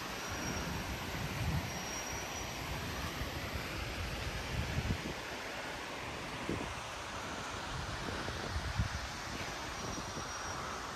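Steady outdoor street ambience: an even rushing noise with a few soft low thumps scattered through it.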